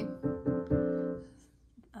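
Kawai piano: a few notes and chords struck in quick succession in the first second, ringing on and dying away by about halfway through. The note combinations are dissonant, clashing ones that don't generally sound good together.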